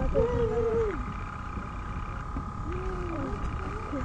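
A steady high whine and low rumble, with two drawn-out, voice-like calls that rise and fall, one in the first second and another about three seconds in.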